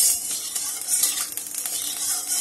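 Hot oil sizzling in an aluminium kadai while a metal spatula is scraped and stirred around the pan, spreading the oil.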